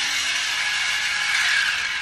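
Mini 4WD car's small electric motor and plastic gears whirring as it runs on the plastic course, a steady high whir that grows a little louder about one and a half seconds in.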